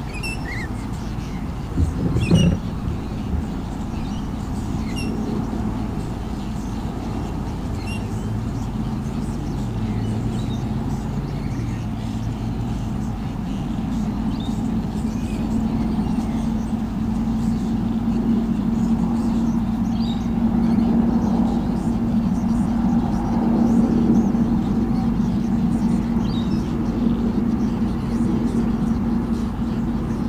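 An engine running steadily: a low hum that wavers in pitch around ten seconds in, then holds one steady tone through the second half. There is a short knock about two seconds in, with faint high chirps over the top.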